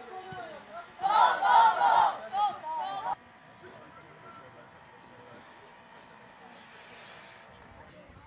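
A group of young voices shouting together for about two seconds, cut off suddenly, then faint outdoor background.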